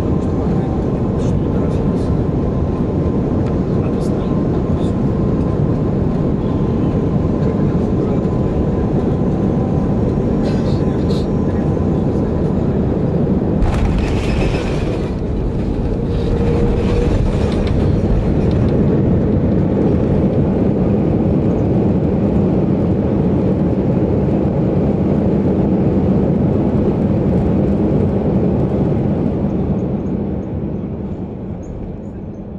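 Jet airliner cabin noise during landing: a steady engine and airflow rumble, then the touchdown about 14 seconds in, followed by a louder roar and rumble of the wheels and engines as the aircraft rolls out and slows down the runway, fading a little near the end.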